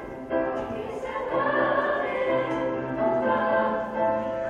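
A youth choir singing together, holding long notes that move from pitch to pitch, with a brief break for breath just after the start.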